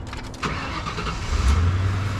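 A stock-car engine is cranked over by the starter and catches about a second and a half in. It then settles into a steady idle, which shows that the newly wired battery and kill switch let the car start.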